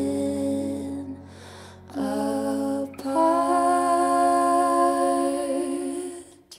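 A woman's voice holds long, steady notes over keyboard in a live indie-rock band performance. The notes are broken by a quieter gap about a second in, then a long held note starts about three seconds in and fades near the end.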